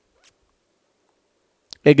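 A faint brief scratch of a stylus writing on a tablet in an otherwise quiet moment, then a man begins speaking near the end.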